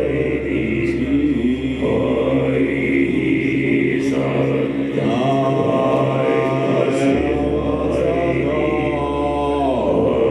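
A man's deep, drawn-out chant-like vocals through a microphone, the held notes sliding in pitch and falling near the end, over a steady low drone whose deepest part drops out about seven seconds in.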